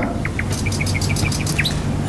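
Small bird chirping: two short rising notes, then a quick run of about eight short high chirps and a longer note, over a low steady hum.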